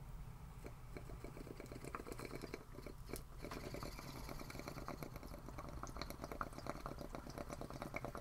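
A rapid, fairly even mechanical clicking rattle over a low hum, starting just under a second in.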